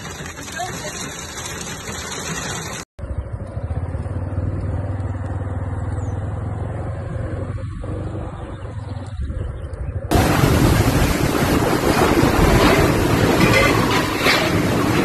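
Storm noise in three cut-together parts: heavy rain and hail beating on a car with the windshield wiper running, then a steady low rumble, then about four seconds from the end a sudden jump to a louder rush of storm noise.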